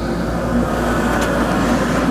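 Outdoor wood boiler running: a steady, even drone with a low hum underneath, the noise of its draft fan while it is firing.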